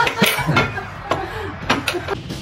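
A few short, sharp knocks and clinks of a plate and cutlery on a wooden dining table, spread through the two seconds, with faint voices in between.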